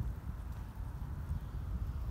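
Low, uneven rumble of outdoor noise on the microphone, with a few soft thumps.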